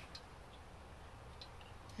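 Quiet room tone with a couple of faint, short ticks.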